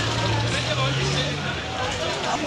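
Indistinct voices of people talking, with a steady low hum under them for about the first second and a half, its pitch edging slightly upward.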